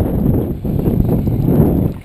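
Wind buffeting the camera microphone: a dense, uneven low rumble with irregular gusts.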